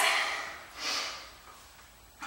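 A woman's single short breath through the nose, about a second in, drawn while she catches her breath after exercising.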